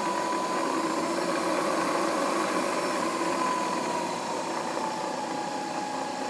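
Fryer MB-11 CNC bed mill spindle running in low gear: a steady mechanical whine over a hum, its pitch and level sinking slightly from about four seconds in.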